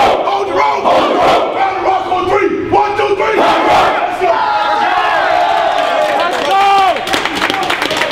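A football team of young men yelling together in a loud, overlapping rallying roar, with a few long hollered shouts in the middle. Sharp clattering starts near the end.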